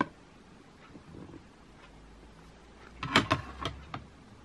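A few sharp plastic clacks about three seconds in, as a hard plastic graded-card case (PSA slab) is set down on a stack of other slabs. Before that there is only faint room tone.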